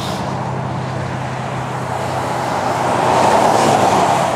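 Highway traffic noise from passing cars, swelling as a vehicle goes by about three seconds in, over a steady low hum.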